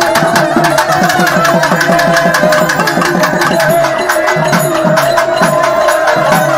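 Traditional temple festival music: rapid, steady drumming over a held high note.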